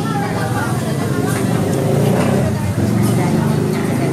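Voices of people talking in a busy eating place, over a low steady hum.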